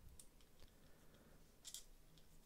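Faint clicks of a Mafex Daredevil action figure's plastic shoulder butterfly joints being worked by hand, the clearest click near the end.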